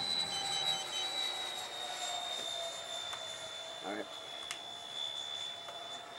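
Electric ducted-fan model jet flying past overhead, a steady high fan whine that falls slowly in pitch as it moves away. Four quick electronic beeps sound near the start.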